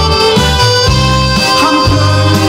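Instrumental passage of a song's backing music between sung lines: a held lead melody over bass notes and a steady accompaniment, with no voice.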